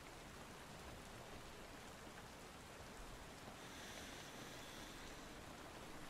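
Faint, steady rain ambience: an even soft hiss of rainfall with no distinct drops or thunder.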